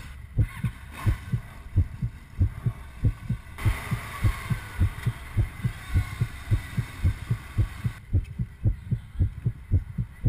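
A steady, low, heartbeat-like thumping, about three thumps a second, laid over the pictures as a soundtrack. A stretch of higher hiss with faint wavering tones cuts in about three and a half seconds in and cuts out at eight seconds.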